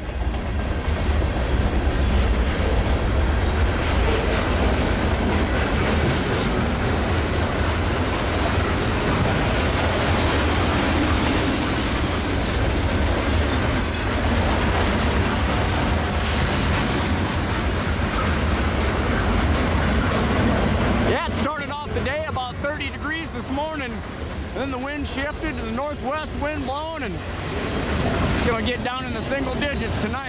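Freight train cars rolling past close by: a steady, loud rumble and roar of steel wheels on the rails. About two-thirds of the way through it gets a little quieter, leaving a wavering, sweeping rush as the wheelsets go by.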